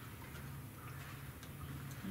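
Quiet room tone: a steady low hum with a few faint, scattered clicks.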